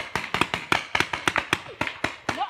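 Rapid run of hand slaps, about eight a second: a child hitting his brother.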